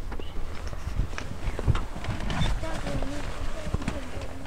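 Faint, indistinct speech with scattered light clicks and knocks of handling.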